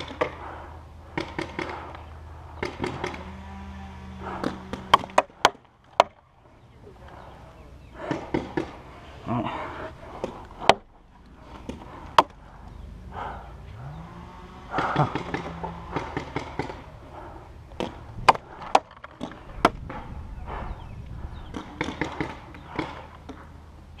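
Paintball markers firing scattered single shots: sharp pops at irregular intervals, often a second or more apart.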